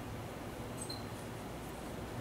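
Steady low room hum and hiss, with a faint, brief high squeak just before a second in.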